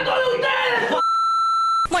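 A drawn-out shouting voice, then a steady, high single-pitched beep lasting just under a second that starts and stops abruptly: a TV censor bleep over a word.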